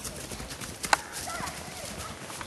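Horse hoofbeats on a woodland track, irregular and fairly faint, with one sharper knock about a second in.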